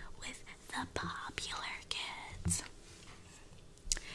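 A girl whispering close to the microphone, with a quieter pause near the end and a short click just before the end.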